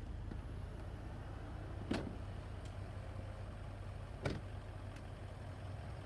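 A Range Rover's split tailgate being shut: two solid thuds, about two seconds in and again about four seconds in, over a steady low hum.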